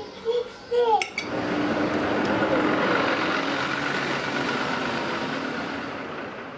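City bus standing at a stop with its engine running, a steady hiss of engine and street noise that fades slightly toward the end.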